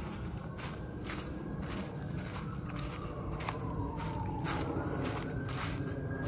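Footsteps crunching through deep, dry fallen leaves on a forest floor, about two steps a second.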